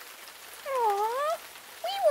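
A single short vocal call, about half a second long, that dips in pitch and rises again like a meow, voiced for a furry puppet.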